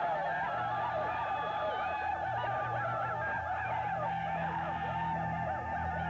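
A crowd of men whooping and ululating together: a dense chorus of high wavering cries that breaks out suddenly and holds at a steady pitch band, over a low steady drone.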